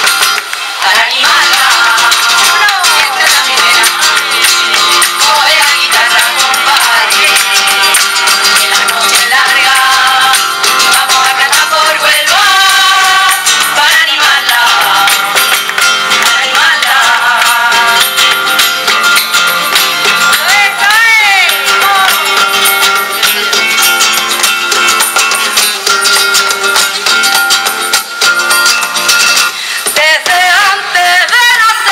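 A women's group singing a Spanish-language song together to a strummed acoustic guitar, with rhythmic hand clapping (palmas) keeping the beat.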